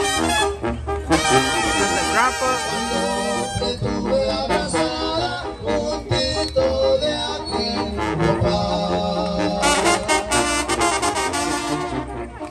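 Live Mexican brass band (banda) playing: trumpets and trombones over a sousaphone bass line, driven by a bass drum and snare.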